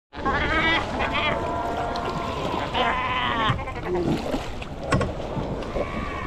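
Cape fur seals in a colony calling: several wavering, pitched cries in the first three and a half seconds, over a constant wash of water and paddling, with a sharp knock near five seconds.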